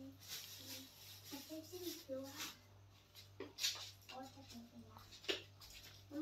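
Faint, quiet talking in the background, with a few soft hissy consonants, over a steady low electrical hum.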